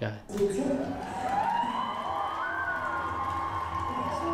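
A woman singing one long held note that rises and then glides slowly down, with a steady lower tone sustained beneath it.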